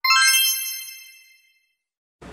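A single bright chime sound effect for a logo reveal, struck once and ringing out with a shimmering high tone that fades away over about a second and a half.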